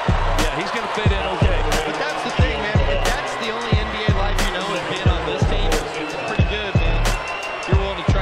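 Background music with a heavy beat: deep bass hits that drop in pitch, landing roughly every two-thirds of a second, under sharp percussion clicks and a vocal line.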